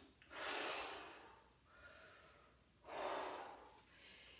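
A woman breathing hard from exertion: two long, forceful breaths, the first just after the start and the second about three seconds in.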